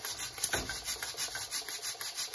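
Pressure cooker's regulator valve letting out steam in a fast, even, rhythmic hiss while the pot is at full pressure, with a single sharp click about half a second in.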